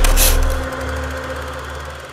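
Logo sound effect for an animated title card: a deep bass rumble with a short whoosh about a quarter second in, fading away over the next second.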